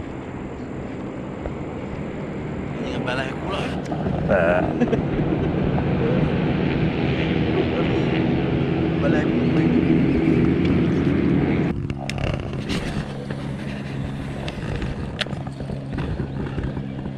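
A small boat's outboard motor running under way, getting louder over the first few seconds, then throttled back sharply about twelve seconds in and carrying on at a lower, steady pitch.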